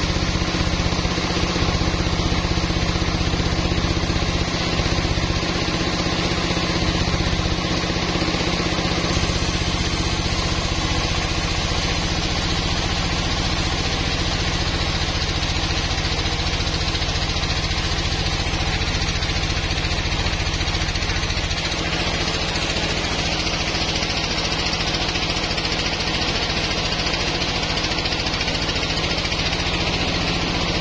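Log band saw running steadily, its blade sawing lengthwise through a teak slab, with a low motor hum under the cutting noise.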